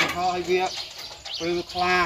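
A man talking in short phrases with long, evenly held syllables.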